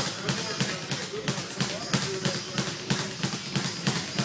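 Steady rhythmic thumping, about three beats a second, with faint voices underneath.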